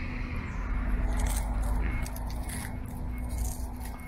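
Outdoor street background: a steady low rumble of road traffic with a faint hum through the first half, and light rustling and handling ticks.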